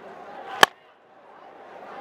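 A cricket bat striking the ball once, a sharp crack about half a second in, over a low crowd murmur. The murmur drops away sharply just after the hit, then slowly returns.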